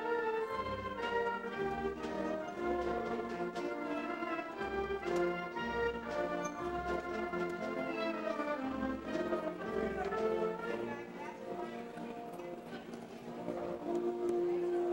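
Concert wind band playing: saxophones, clarinets, trumpets and tubas together, with a low bass note repeating under the melody. The music goes softer about eleven seconds in, then swells again near the end.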